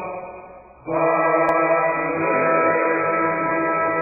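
Background music. One piece fades out over the first second, and another made of long held notes starts abruptly just under a second in.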